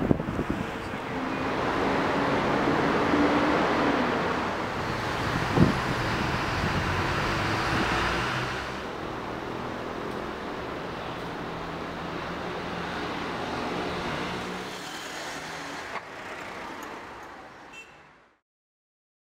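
Road traffic noise from vehicles running past, louder in the first half and easing off after that. There is one sharp knock partway through, and the sound fades out at the end.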